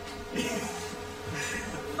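Faint laughter and murmuring from a small audience over a steady electrical hum.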